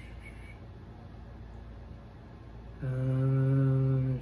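Quiet room tone, then near the end a man's long, drawn-out "uhh" hesitation held at one steady pitch for over a second.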